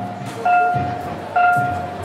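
Festival float's taiko drum struck twice, about a second apart, each beat joined by a short, steady high tone.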